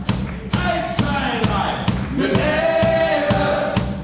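Live rock band playing, with a drum beat about twice a second and a steady bass line, while a group of voices sings along together and holds a long note in the second half.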